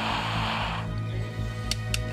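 Low sustained background music, under a hiss inside a pressure-suit helmet that dies away about a second in, then a few faint clicks near the end.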